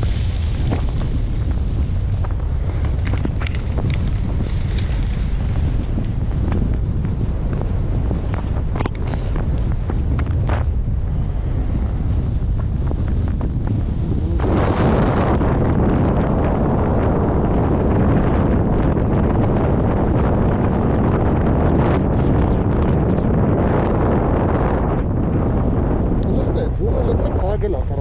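Wind buffeting the microphone of a camera carried down a ski slope: a steady, heavy low rumble that turns into a louder, harsher rush about halfway through.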